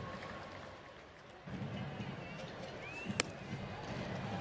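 Ballpark crowd murmur, dipping briefly and swelling again, with a short rising whistle and then a single sharp crack at home plate about three seconds in as a pitch arrives.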